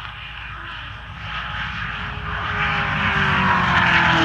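A race car running flat out at high speed, about 170 mph, growing louder as it approaches, its engine pitch dropping in the last second or so as it goes past.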